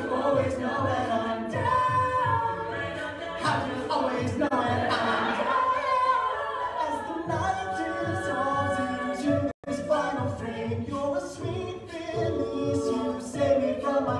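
Co-ed a cappella group singing a pop song in close harmony, with a male lead out front and vocal percussion keeping a steady beat underneath. The sound cuts out for an instant about two-thirds of the way through.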